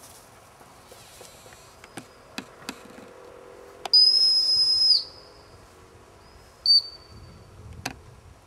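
A handler's gundog whistle blown to a working Labrador retriever: one steady high blast lasting about a second, dipping slightly in pitch as it ends, then a shorter blast about two seconds later.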